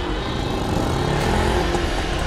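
Auto-rickshaw's small engine running as it draws near, growing a little louder, with a slight rise in pitch partway through.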